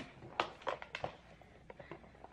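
A string of short, sharp clicks and crinkles as a toy's box and plastic packaging are handled and opened by hand.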